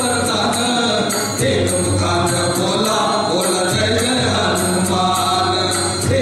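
Several voices singing a Marathi devotional song together over keyboard accompaniment, with a steady jingling percussion beat a little under two strokes a second.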